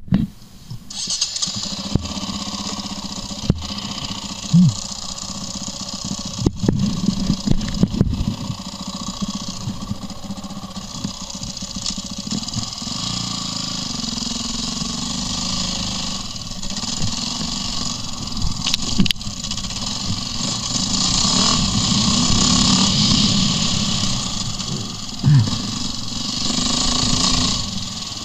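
KTM enduro motorcycle engine starting about a second in, then running and revving as the bike moves off over dirt trail, with a few knocks early on and getting louder for a while past the middle.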